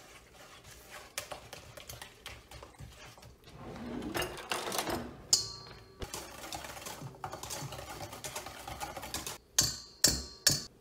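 A spatula stirring batter in a stainless steel mixing bowl: a quick run of small clicks and scrapes against the metal. There is a sharp clank that leaves the bowl ringing about five seconds in, and another loud clank just before the end.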